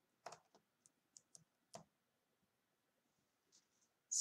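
Faint taps and clicks of paper cutout shapes being pushed together into a row on a poster board, about six in the first two seconds.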